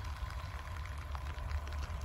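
Large motorhome's engine running low and steady as it drives slowly along a wet road, with light rain pattering.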